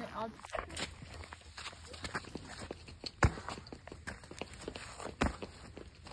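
Irregular light clicks and knocks, with two sharper, louder knocks about three and five seconds in.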